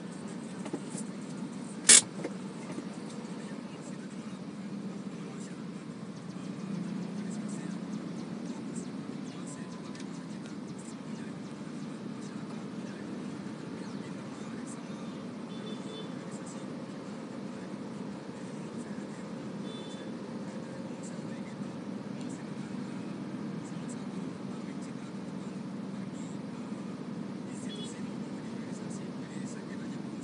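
Low, steady hum of a car's engine idling in stopped traffic, heard from inside the cabin, with one sharp click about two seconds in.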